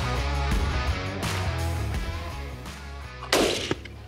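Background music fading out, then a single loud hunting-rifle shot about three seconds in, with a short echo after it.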